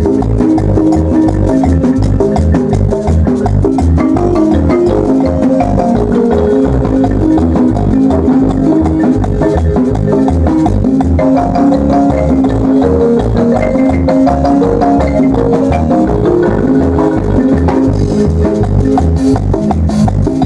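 Guatemalan marimba ensemble playing a dance tune: a marimba melody over a steady, regular bass and drum beat, running on without a break.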